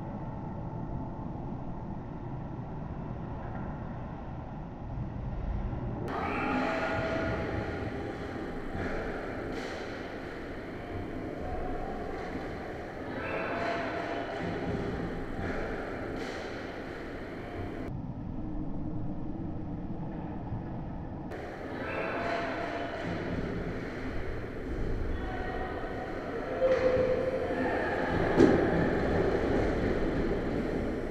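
Ice-rink game sound picked up at the goal: a steady low rumble with skates scraping the ice and sticks and puck clacking now and then. The sound changes abruptly at several cuts, and a sharp knock near the end is the loudest.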